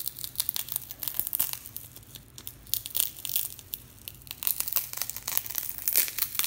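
A cracked tempered-glass screen protector, held on with cured UV (LOCA) glue, being peeled off a phone screen. It gives an irregular run of crackling and snapping clicks as the glass and glue break away.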